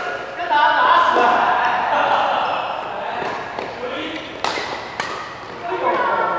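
Voices calling out in a large, echoing hall during a badminton rally, with two sharp racket hits on the shuttlecock about half a second apart near the end.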